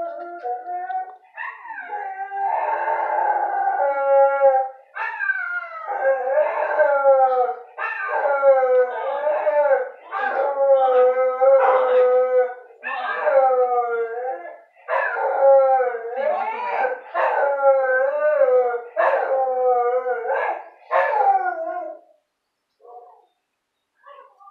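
A brindle shelter dog howling, a long run of about fifteen wavering howls, each a second or two long with short breaks between, stopping about two seconds before the end.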